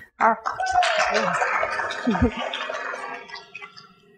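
A microphone being pulled from its stand clip and handled close up: rubbing, scraping and knocks, with some voice mixed in. It dies down near the end.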